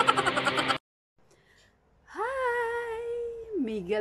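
A man's voice cuts off abruptly under a second in, followed by a second of dead silence. A woman's voice then holds one long, steady note and drops lower in pitch at the end.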